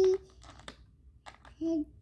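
A child's sung note ends, then a few soft clicks of small plastic letter cubes being moved about in their tray. There is a brief voice sound near the end.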